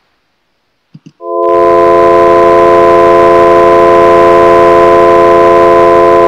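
A sustained microtonal just-intonation pentachord (ratios 1/1, 5/4, 11/8, 3/2, 25/13) played back electronically. It starts after a brief click about a second in and is held loud and steady, with no change in pitch.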